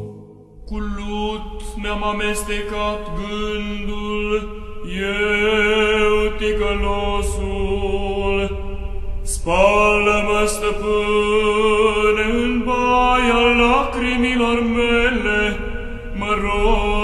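Romanian Orthodox chant: long, slow held notes in drawn-out phrases, with fresh phrases starting about five and nine and a half seconds in.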